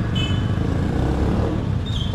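Steady low rumble of a motor vehicle's engine and road noise, with a brief high tone just after the start.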